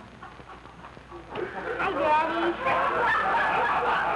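Several people laughing, starting about a second and a half in and building to a loud, sustained burst.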